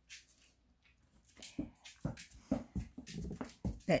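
A pet dog moving beside the microphone, with a run of irregular soft thumps starting about a second and a half in.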